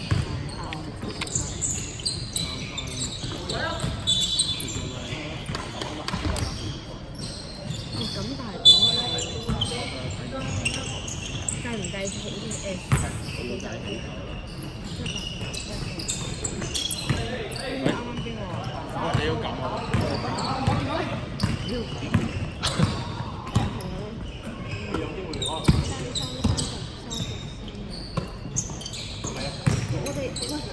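Basketball game sounds on a hardwood court in a large, echoing sports hall: the ball bouncing in repeated sharp knocks, brief high squeaks from the players' shoes, and indistinct shouts from the players.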